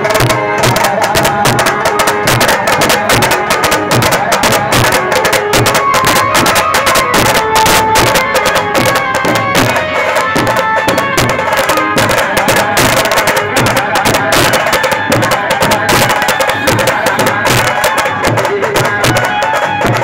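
Several dhol drums beaten together in a fast, dense rhythm that runs on without a break, with a sustained melody instrument playing over the drumming.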